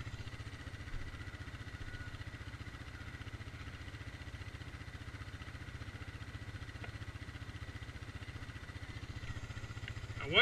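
ATV engine idling steadily with an even low pulse.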